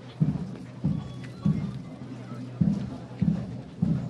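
A steady rhythmic beat of short low thuds, roughly one every 0.6 seconds, over a low steady hum.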